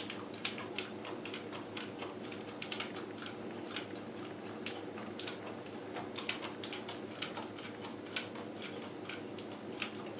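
Dog licking peanut butter off a lick mat on the floor: irregular wet clicking licks, a few per second, over a steady low hum.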